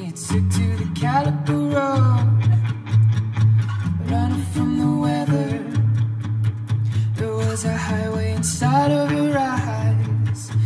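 Live acoustic song: a man singing in phrases over steadily strummed acoustic guitar.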